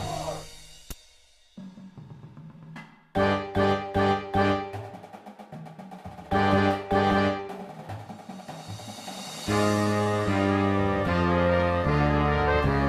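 Marching band playing: after a quieter opening, the brass and drumline strike loud accented hits about three seconds in and again around six seconds, then the brass swells into sustained chords near the end.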